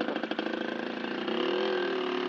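A small motorcycle engine running under load as the bike is worked through deep mud, its pitch rising about a second in.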